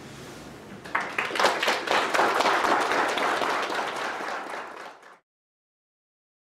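Audience applauding: dense clapping starts about a second in and cuts off suddenly about five seconds in.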